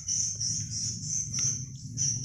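Crickets trilling steadily, a high pulsing chirr, over a low steady hum.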